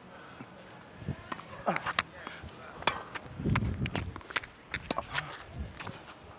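Tennis ball being hit with rackets and bouncing on a hard court during a rally: a string of sharp pops at irregular intervals, with players grunting and a brief low rumble in the middle.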